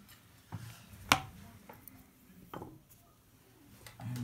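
Small lock-disassembly tools being set down on a felt-covered bench: a few light knocks and clicks, the sharpest about a second in.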